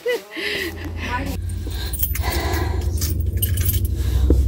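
Car engine running, heard inside the cabin as a steady low hum that starts about half a second in, with keys jangling and clinking over it.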